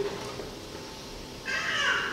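A man's speaking voice pausing. The end of one word trails off at the start, there is about a second of quiet room tone, and the next phrase begins near the end.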